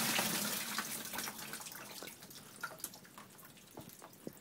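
Rainwater pouring out of the end of a flexible foil dryer vent duct and splashing into a plastic bin, heaviest in the first second and then thinning to a trickle and scattered drips. The water has got into the vent duct, which the owners believe is from a leak in the roof vent.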